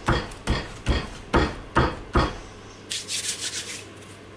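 Hand-sanding a small resin and burl wood blank on a sheet of sandpaper laid flat on a board. Even back-and-forth rasping strokes come about two a second, then a quicker run of short, higher scrapes near the end.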